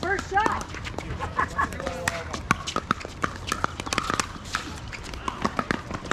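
Pickleball paddles striking the hard plastic ball: many sharp, irregular pops from this court and the neighbouring courts, with voices of players in the background.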